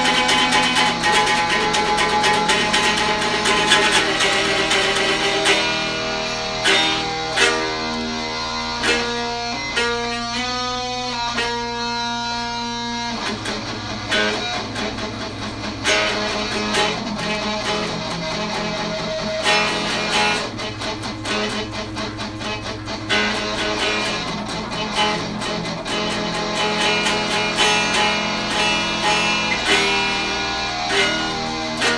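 Guitar playing an instrumental piece in plucked notes and chords. About seven seconds in, the playing thins to a run of clearly separated picked notes, then fills out again about thirteen seconds in.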